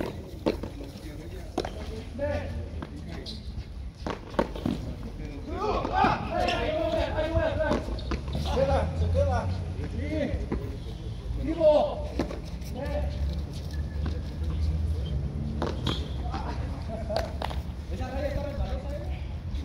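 A hand-pelota (frontón a mano) rally: sharp smacks of the ball against bare hands and the concrete frontón wall, one loud crack about two-thirds of the way in. Men's voices talk and call between the strikes.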